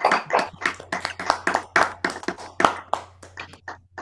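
Applause from several people clapping at once over a video call, a dense, uneven patter of claps from many unmuted microphones.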